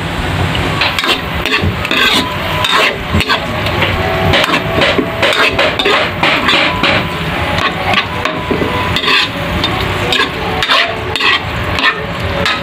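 A metal ladle scraping and clinking against a metal wok in irregular strokes as minced meat is stir-fried, with frying sizzle underneath.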